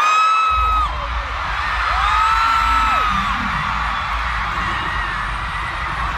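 Arena concert crowd noise with long, high screams from fans, over deep bass music from the sound system that comes in about half a second in.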